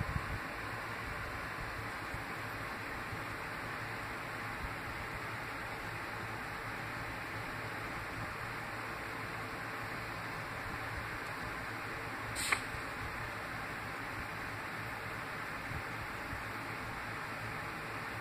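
Steady hiss of background noise, with one brief sharp crackle about twelve and a half seconds in.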